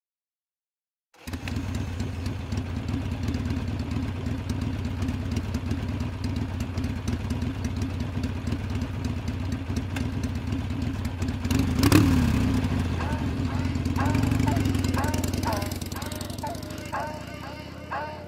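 Cruiser motorcycle engine running at idle with a fast, uneven pulse, starting abruptly about a second in. It is revved once sharply around the middle, then fades out near the end as music with a hummed voice begins.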